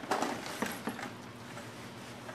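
Faint handling noise: a fabric bag rustling and a plastic toy blaster being pulled out of it, with a few soft knocks in the first second, over a quiet outdoor background.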